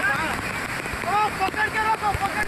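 Steady rush of a flooded, fast-flowing stream, with several people shouting and crying out in high, strained voices over it.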